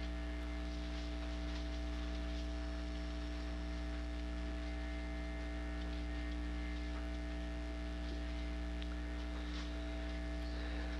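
Steady electrical mains hum from the recording or sound system, a low drone with a few higher steady tones over faint hiss, with occasional faint small ticks.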